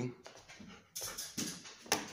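Siberian husky panting close to the microphone, a few short breaths.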